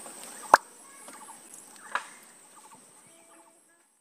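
Outdoor ambience with faint bird calls and a steady high insect drone, broken by a sharp click about half a second in and a smaller one near two seconds, fading out near the end.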